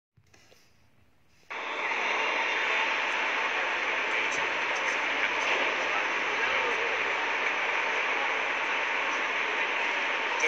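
Near silence, then about a second and a half in a steady rushing noise of wind across the microphone cuts in and holds.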